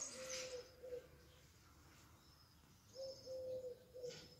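Faint bird calls: a low call of a few held notes in the first second, repeated from about three seconds in, with faint high thin calls in between.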